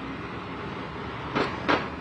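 Steady city street background noise of traffic, with two brief sharp noises about a second and a half in.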